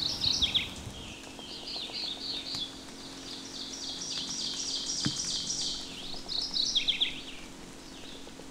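Songbirds singing in spring woodland. A long run of quick, high repeated notes fills the middle, with short clusters of falling notes at the start and near the end.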